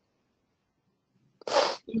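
A short, sharp burst of a person's breath noise close to the microphone, about one and a half seconds in, after near silence.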